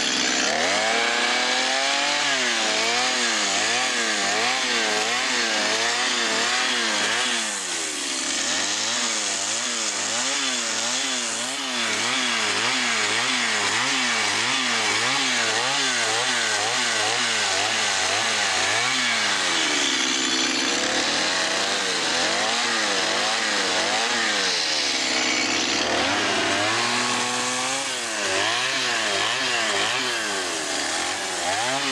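Chainsaw cutting into wood for a carving, its engine pitch rising and falling about once a second as it is throttled and loaded in the cut. Several times it drops back briefly before revving up again.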